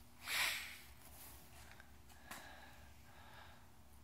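A short breathy exhale close to the microphone about half a second in, then quiet room tone with a faint click a little past two seconds.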